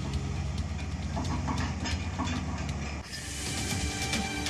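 Tata Hitachi excavator's diesel engine running, with scattered knocks and clatter of broken concrete. The sound changes abruptly about three seconds in.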